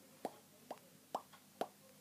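A faint, regular series of short mouth pops, about two a second, each with a quick upward flick in pitch, beatboxed as a robot-movement sound effect.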